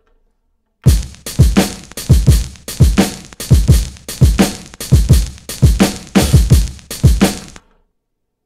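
Boom bap drum loop built from chopped breakbeat samples, with an extra kick layered in to beef it up, played back from an Akai MPC X sequence at 85 BPM with no other instruments. Kick and snare hits start about a second in and stop shortly before the end.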